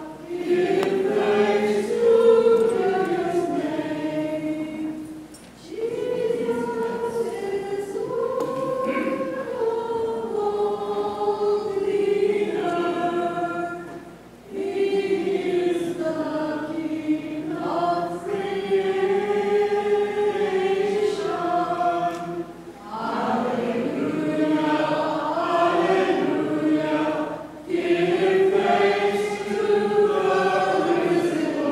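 A church choir singing a hymn as the liturgy closes, in long phrases with short pauses between the lines.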